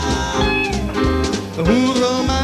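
Live band with horns, keyboard, guitar, double bass and drums playing an instrumental passage between sung lines. A descending run falls through the middle, and a note slides up into a held pitch near the end, over steady drums and cymbals.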